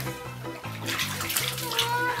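Water splashing in a bathtub as a wet cat is washed by hand, loudest about a second in, over background music with a steady bass line.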